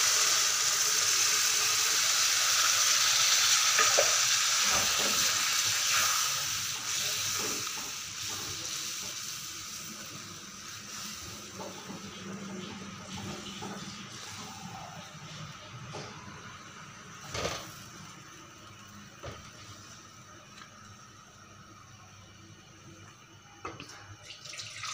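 Wet ground masala paste hitting a hot karahi of fried chicken and sizzling loudly, the sizzle fading over about ten seconds to a low simmer. A few light knocks of the spatula in the pan follow, the sharpest a little past the middle.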